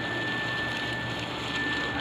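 Insulation blower running steadily, blowing loose cellulose fiber insulation through its hose as a steady rushing hiss with a thin high whine and a low hum beneath.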